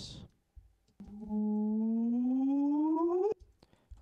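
A short 'bip' sample dragged out to a much longer length in Logic Pro X and played back as a single low tone with overtones. It starts about a second in, glides slowly and steadily upward in pitch for a little over two seconds, then cuts off suddenly.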